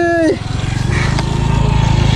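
Small underbone motorcycle engine running with a fast, even pulsing, growing steadily louder as the bike comes closer.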